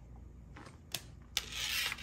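A tarot card being laid back down and slid across the table and the other cards: two light clicks about a second in, then a brief rubbing scrape.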